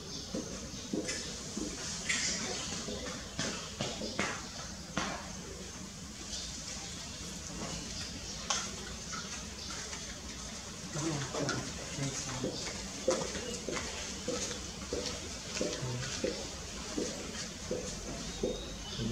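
Outdoor ambience with scattered short clicks and snaps throughout, and indistinct voices of people talking from about eleven seconds in.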